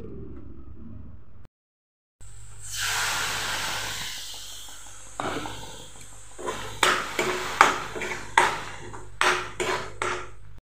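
Masala frying in hot oil in a metal pan: a sizzle that swells soon after a short cut to silence and then eases, joined from about halfway by a metal spoon knocking and scraping against the pan in a run of sharp clinks.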